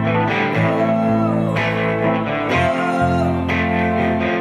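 Country band playing an instrumental break, with electric guitar prominent over a walking bass line.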